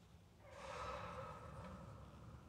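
A person's breathy exhale, like a sigh, close to the microphone: it starts about half a second in and fades away over a second or so.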